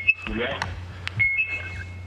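A man says one word through a hall's microphone and loudspeakers, then a faint, thin, steady high whistle comes in about a second in and holds, over a low steady hum.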